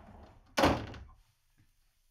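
A wooden room door shutting with a single loud thud about half a second in, dying away quickly.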